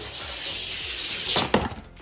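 Hot Wheels die-cast toy cars rolling fast down an orange plastic track with a steady rushing rattle, then a few sharp clacks about a second and a half in as they reach the end of the run.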